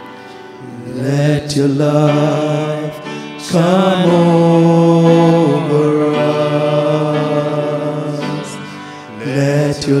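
Men singing a slow worship song, holding long notes that drift and waver in pitch.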